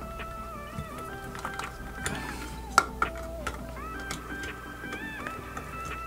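Soft background music: a slow melody of held notes stepping from one pitch to another. Over it come a few light clicks of the headset's plastic earcup being handled, the sharpest about three seconds in.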